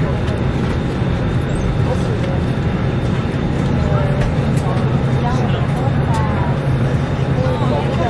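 Airliner cabin noise: the steady low drone of the engines and airflow heard from inside the cabin, with faint passenger voices in the background.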